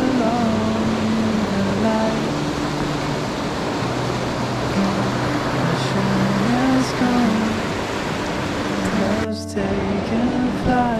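Steady rush of a shallow river running over rocky rapids, with background music over it.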